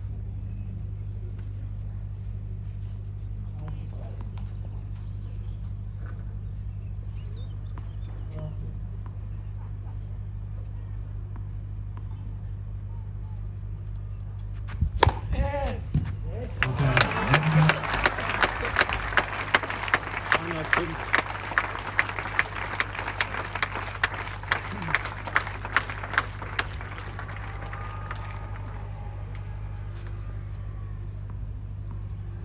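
Tennis spectators applauding a point: a brief shout about halfway through, then about ten seconds of clapping, with single loud claps close by standing out before it dies away.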